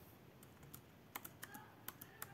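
A handful of faint, irregular computer keyboard key clicks.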